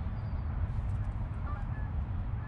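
Wind rumbling on the microphone, with a few faint short bird calls in the background.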